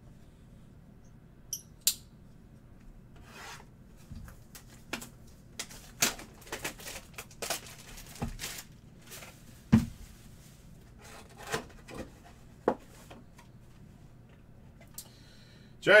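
A trading card hobby box being unwrapped and opened by hand: plastic wrap crinkling and cardboard and packs rustling, in a scattered run of short crackles and clicks. A voice starts speaking at the very end.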